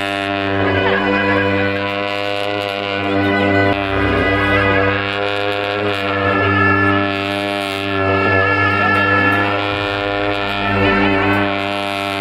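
Tibetan monastic ritual music: gyaling shawms playing a wavering, ornamented melody over a steady low horn drone, with a few percussion crashes.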